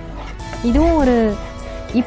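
Soft background music, with a single drawn-out vocal sound from a woman about a second in that rises and then falls in pitch, like a sung or hummed 'mmm'.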